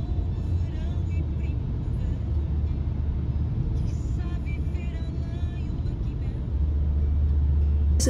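Inside a moving car's cabin: a steady low drone of engine and road noise with tyre hiss from wet roads.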